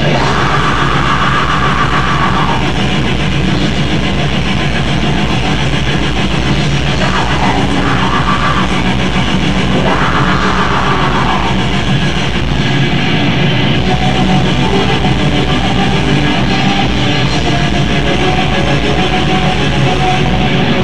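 Black metal band playing live: distorted electric guitar over fast, even drumming, with the low drum strokes dropping out briefly about twelve seconds in.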